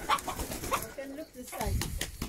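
Birds making short, low calls, over quiet talk in the background.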